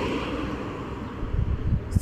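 A car passing close by on the road with a steady tyre rush that fades away, and wind gusting on the microphone in the second half.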